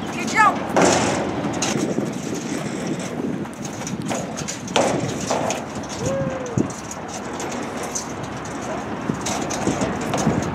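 Children pushing and running beside a spinning metal playground merry-go-round: scuffing footsteps on sandy dirt over a steady outdoor rush, with brief children's vocal sounds.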